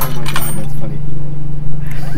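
A steady low hum throughout, with a light clink of metal tools against the aluminium pump assembly near the start and faint voices in the background.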